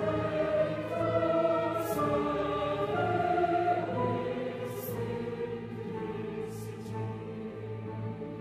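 Mixed choir singing held chords with a string orchestra, the notes moving to new pitches about once a second.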